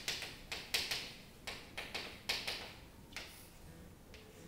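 Chalk writing on a blackboard: a quick, uneven run of about a dozen chalk taps and scratches over the first three seconds, then it stops.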